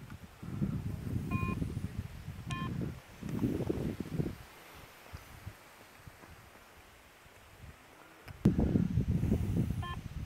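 Garrett metal detector giving short single electronic beeps, two in the first three seconds and another near the end, signalling metal in the soil at the spot being dug, where a buried bullet is found. Stretches of low rumbling noise come in between.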